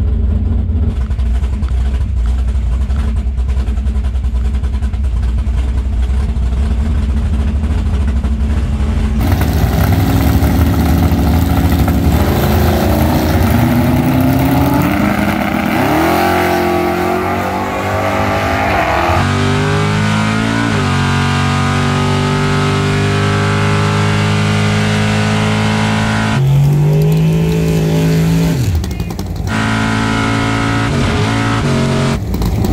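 Chevrolet Camaro drag car's engine idling with a low, steady rumble, then revving and accelerating hard, its pitch climbing and dropping through several changes, with another rise and fall near the end.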